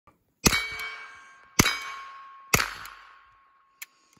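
Three suppressed gunshots from a handgun-style firearm, about a second apart, each a sharp report followed by a long metallic ringing that fades slowly. A short click sounds near the end.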